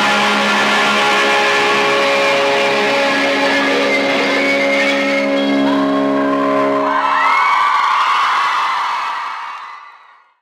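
Rock music ending on a long held, ringing chord, then a crowd cheering that fades out near the end.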